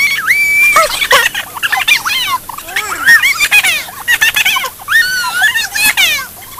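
Several children shrieking and squealing with excitement, high-pitched and overlapping, as a bundle of sparklers flares up.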